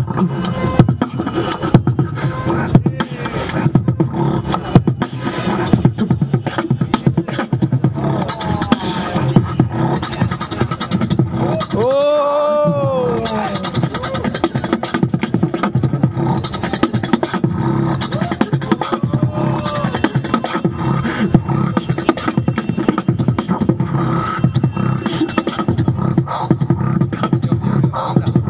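Solo beatboxing into a handheld microphone: a fast, continuous run of drum-like mouth percussion, with a short pitched vocal line that rises and falls about twelve seconds in and briefer pitched phrases before and after it.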